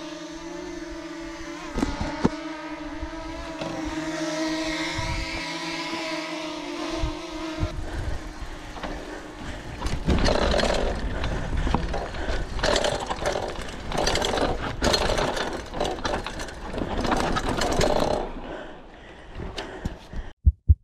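A DJI Mini 2 drone's propellers whine steadily as it hovers for the first several seconds. After that a louder, irregular noise with repeated swells takes over.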